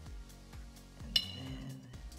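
Background music with a steady beat, and about a second in a single sharp clink of a glass jar being handled, ringing briefly.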